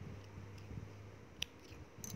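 Scissors snipping through a crochet yarn tail once, a short sharp snip about one and a half seconds in, over a faint steady hum.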